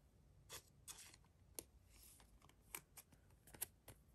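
Near silence with a few faint clicks and rustles of a trading card being handled and turned over in the fingers.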